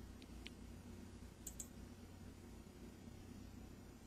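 Near silence with a few faint computer mouse clicks, two of them close together about a second and a half in.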